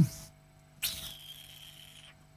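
A man draws a long hissing breath through his teeth, starting about a second in and lasting just over a second, over a faint steady electrical hum.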